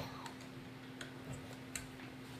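Small, sharp plastic clicks of Lego Bionicle pieces being handled and pressed together, about four clicks spread irregularly over two seconds, over a faint steady hum.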